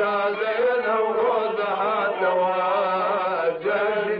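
Background music: a solo voice singing a slow, wavering melody over a steady low drone, with a brief pause about three and a half seconds in.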